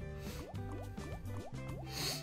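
Online slot game audio: steady backing music with a run of short, rising bubbly blips, about four a second, as the fishing-themed reels spin, and a brief splashy hiss near the end.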